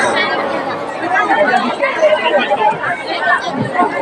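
Many voices chattering at once: crowd babble, with no single voice standing out.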